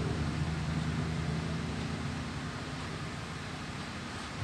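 Steady low background hum with hiss, room noise of the kind a fan or air conditioner makes, slowly getting quieter.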